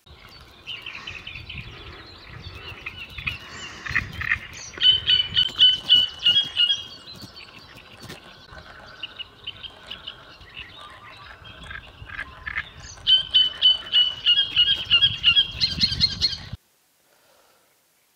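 Bird song: loud series of quickly repeated high notes in two spells, about five and about thirteen seconds in, with quieter calls between, over a low rumble; it cuts off suddenly near the end.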